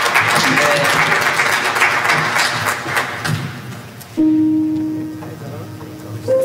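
Congregation clapping and voices murmuring, fading out after about three seconds; about four seconds in a keyboard starts a single held low note.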